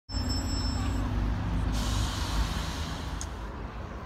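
Double-decker bus engines running with a low rumble, and a short air-brake hiss about two seconds in.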